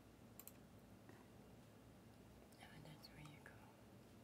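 Near silence: room tone with a couple of faint clicks near the start and a faint voice murmuring past the middle.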